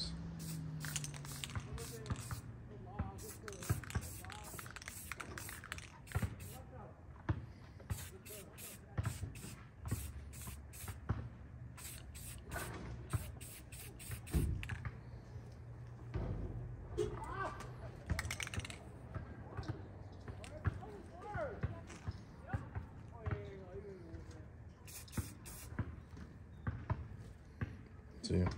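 Aerosol spray-paint can hissing in many short bursts of varying length as paint is dabbed on in accents.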